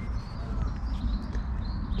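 Small birds chirping faintly over a steady low rumble.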